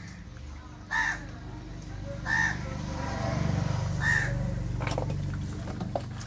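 A crow cawing three times, about one, two and four seconds in, over a steady low machine hum that swells in the middle.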